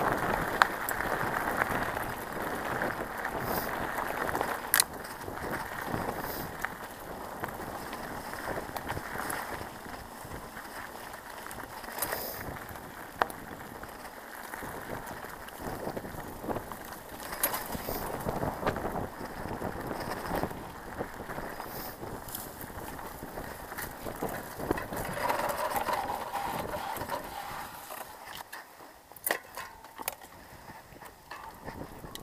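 Mountain bike ridden over a dirt trail: tyres running over dirt and fallen leaves, with the bike rattling in frequent sharp clicks over bumps. The sound eases and gets quieter near the end.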